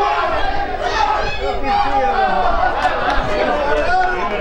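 Several voices from football spectators shouting and chattering over one another, a steady crowd noise without pauses.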